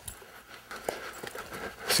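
A horse walking under saddle: faint, irregular hoof falls with a few light clicks.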